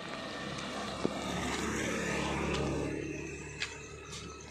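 A motorbike's engine passing on the road, growing louder through the middle and fading near the end, with a sharp tap about a second in.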